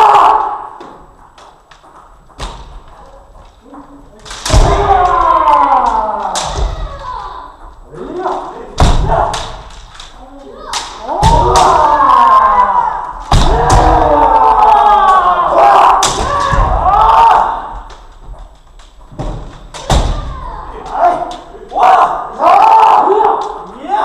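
Kendo sparring: drawn-out kiai shouts from several players, again and again, with sharp thumps of stamping feet (fumikomi) on the wooden floor and clacks of bamboo shinai striking armour, echoing in a large hall.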